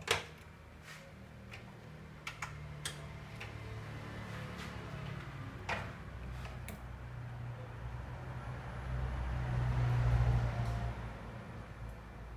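Light clicks and taps from hands handling the thin fluorescent backlight tubes and their plastic holders in an opened LCD TV, spread over the first seven seconds. Under them runs a low hum that grows louder about eight seconds in and eases off near the end.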